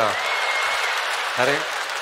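Theatre audience applauding, a steady wash of clapping that dies down as a man starts speaking about a second and a half in.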